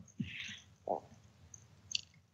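A quiet pause in speech heard over a Skype call line: a faint breath, a brief low vocal sound about a second in, and a small click near the end.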